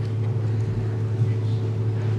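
Steady low hum with a fainter steady higher tone above it, and no speech.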